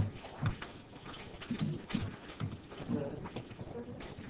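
Classroom commotion as students pass papers forward: scattered irregular knocks and thumps from desks and chairs, with faint murmured voices.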